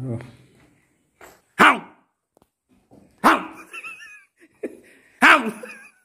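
A dog barking three times, single loud barks about two seconds apart.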